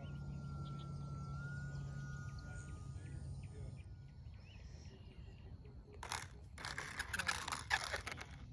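Electric motor and propeller of a radio-controlled sport plane whining steadily, stepping up slightly in pitch, then cutting off about four seconds in as the throttle is closed for landing. Near the end come a few seconds of rough, rustling noise bursts.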